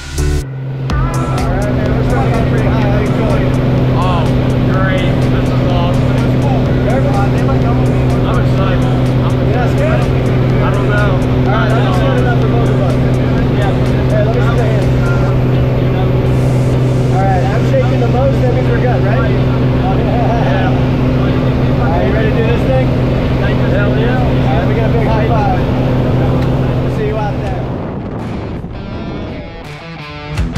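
Single-engine jump plane's engine and propeller droning steadily at climb power, heard inside the cabin, with voices talking over it. The drone cuts off near the end.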